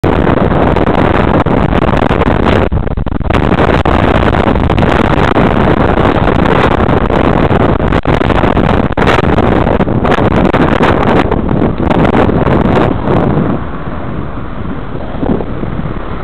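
Wind buffeting the microphone of a bicycle-mounted camera while riding in traffic, loud and gusty, easing off over the last couple of seconds as the bike slows.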